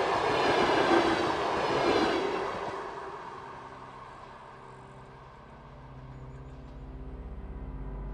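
A train passing close by with a loud rushing rumble that fades away over the first few seconds. Near the end a low, pulsing music drone swells in.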